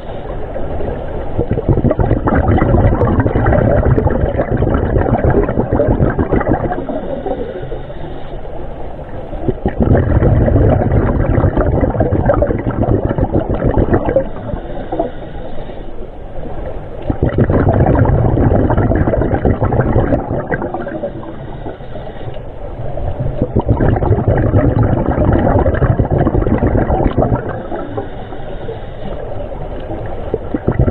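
Underwater sound of scuba divers' exhaled bubbles and regulator breathing, a rumbling gurgle that swells and fades about every six to seven seconds.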